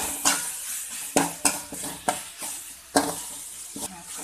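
A spatula scraping and knocking against a pan while stirring tomatoes and green chillies frying in oil, about one stroke a second, over a steady sizzle.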